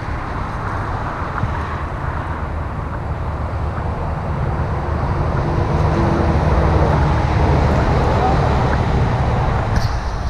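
Steady racket of freeway traffic, a dense rush of passing vehicles that grows somewhat louder about halfway through.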